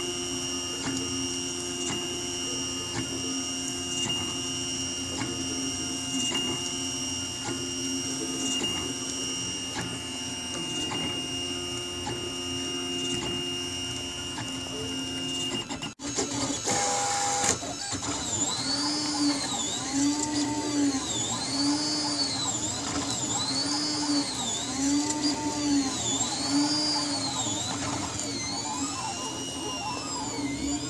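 Printrbot Simple Metal 3D printer at work. At first it makes a steady hum of several tones. After a cut about halfway, the stepper motors whine in rising-and-falling arcs, repeating a little more than once a second as the print head sweeps back and forth.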